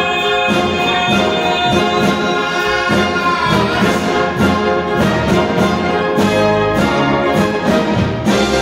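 Military concert band playing an instrumental passage, brass instruments to the fore over a regular beat.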